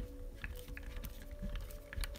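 Small self-tapping screw being driven by hand with a screwdriver through a soft plastic bumper into harder plastic: a few faint clicks and creaks as it turns.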